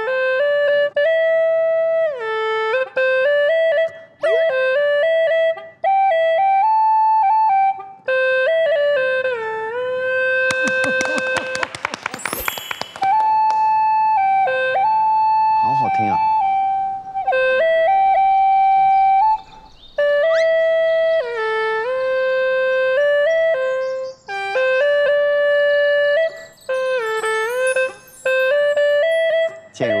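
Hulusi (Chinese gourd cucurbit flute) playing a solo melody: one held note after another, several of them dipping down and sliding back up. A short burst of rapid clicking cuts in about eleven seconds in.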